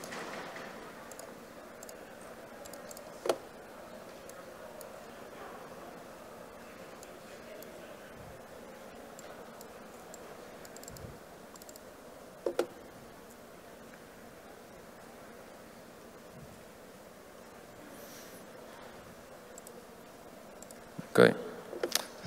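Faint room tone from the hall's microphone, with a sharp click from the laptop keys about three seconds in and a quick double click about twelve seconds in. A man's voice starts just before the end.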